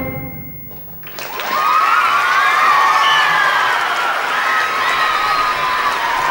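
A school concert band's final chord dying away in the hall, then, about a second in, audience applause breaks out with cheering and whoops that carry on steadily.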